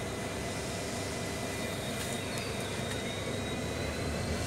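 Steady low rumble of a railway train at a station, with a few faint clicks about two seconds in.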